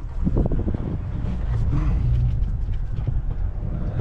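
Low, steady rumble of a Toyota pickup truck's engine and running gear, heard from inside the cab as the truck moves off slowly.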